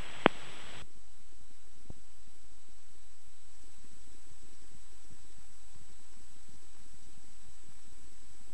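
Aircraft radio/intercom audio feed: a click about a third of a second in as the radio transmission ends, with the radio hiss cutting off just after. Then a steady hiss with a faint high whine.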